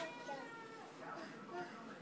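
A young child's faint, high-pitched wordless vocalizing: a drawn-out, slightly falling sound in the first second and a shorter one about one and a half seconds in, after a small click at the start.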